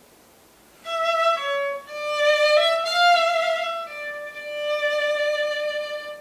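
Solo violin playing a short passage built on a hemiola, grouping beats in twos across the 3/4 meter so it sounds briefly like one big 3/2 bar. It starts about a second in with several short notes and ends on one long held note.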